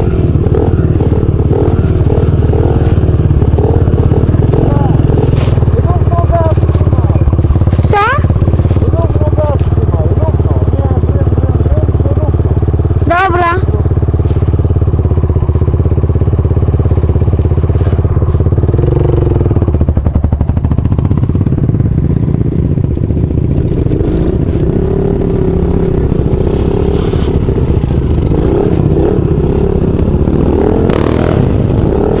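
Dirt bike engine running steadily under way on a dirt track, heard from a helmet camera, with wind on the microphone; the engine note shifts about two thirds of the way through, and a quad's engine runs alongside.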